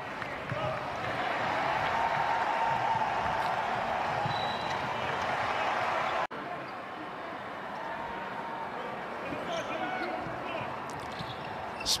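Live court sound of an NBA game: a basketball dribbled on the hardwood and players' voices over a steady arena murmur. The sound cuts out a little past six seconds in and comes back quieter.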